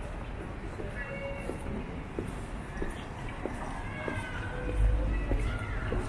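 Outdoor city street ambience: footsteps on paving about every half second or so, a few faint high wavering sounds that rise and fall in pitch, and a low rumble about five seconds in, the loudest moment.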